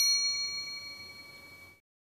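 A single bell-like ding, struck once and ringing down with a clear steady tone over about a second and a half before cutting off suddenly. It is an editing sound effect that goes with an on-screen ingredient caption.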